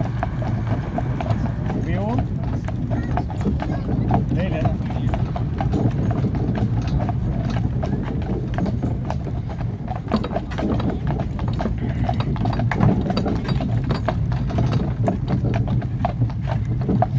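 Hooves of a pair of draught horses clip-clopping on a paved road as they pull a cart. Dense, even strokes run over a steady low rumble.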